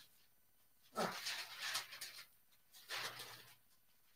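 Parchment paper sheets rustling in two short, faint bursts as they are handled and laid over a shirt on a heat press.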